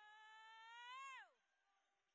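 A high voice holding one long drawn-out cry, its pitch creeping up and then dropping away and ending about a second and a half in.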